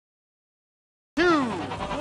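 Dead silence for about the first second, then a man's loud drawn-out shout with a falling pitch: the start-of-match countdown called to the arena crowd.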